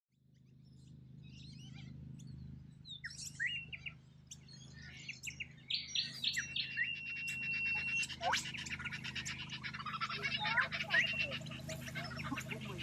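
Noisy miners calling. Scattered chirps and short whistled slides come first. From about six seconds in, a fast, busy run of repeated sharp calls takes over, with one held whistle among them.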